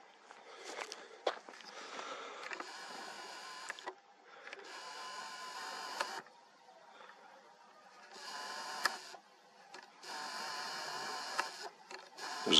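Compact digital camera's zoom lens motor whining in four short runs of one to two seconds each, as the lens zooms in, with a few handling clicks before the first run.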